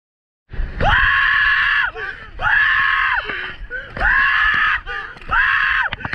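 Rafters screaming while running white-water rapids: four long, high-pitched screams about a second and a half apart, starting half a second in, over the rush of the river.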